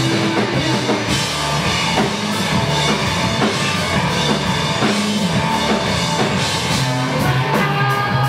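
Three-piece rock band playing live: electric guitar, electric bass and drum kit together in a loud, steady, driving groove.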